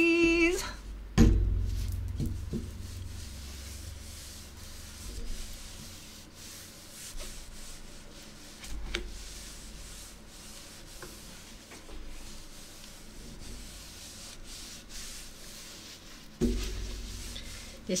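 A sudden thump about a second in, then quiet rubbing and wiping with scattered small clicks and knocks: a spill on a desk being mopped up. A second knock comes near the end.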